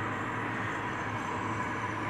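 Steady low background hum with an even noise under it, unchanging throughout, with no distinct event.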